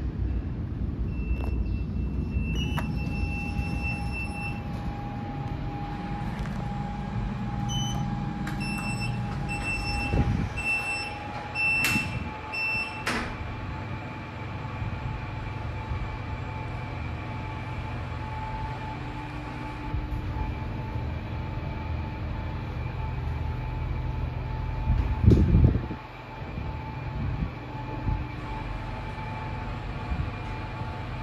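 A Shenyang Brilliant (BLT) passenger lift in operation. There are short electronic beeps, the doors sliding with a few knocks, and a steady high whine that carries on as the car travels upward.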